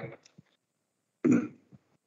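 A person clears their throat once, briefly, just over a second in, amid near silence.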